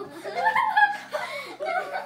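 Girls laughing and chuckling, right after a last sung word at the very start.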